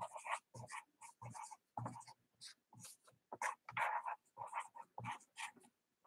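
Felt-tip marker writing on paper: a run of short, irregular, faint strokes as words are written out.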